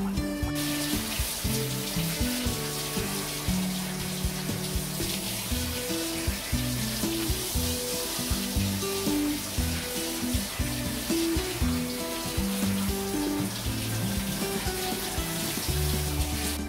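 Water hissing steadily from a handheld bath sprayer held against a dog's wet coat during a rinse, starting about half a second in, with background music playing.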